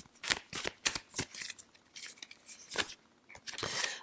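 A deck of tarot cards being shuffled by hand: a run of quick, irregular papery flicks and snaps.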